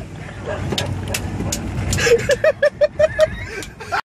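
A car's engine and road rumble heard from inside the moving car, with a man laughing hard in a fast run of short bursts through the second half.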